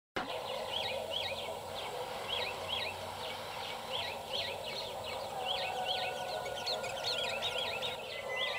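Birds calling over and over in short, swooping chirps, a few each second, over a steady outdoor background hiss.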